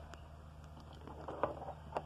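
Faint handling noise: a few light clicks and taps as a plastic toy figure is moved right by the microphone, over a steady low hum.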